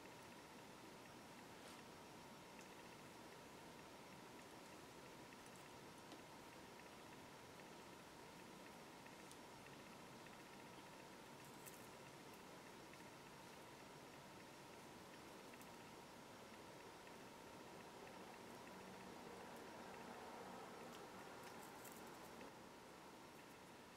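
Near silence: a faint steady hiss of room tone, with a few very faint ticks as fine jewellery wire and small crystal beads are handled.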